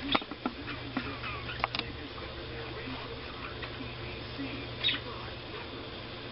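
Faint handling noises of a small fabric model-horse blanket being folded on a wooden table: a few light clicks and taps in the first two seconds and a brief rustle about five seconds in, over a steady low hum.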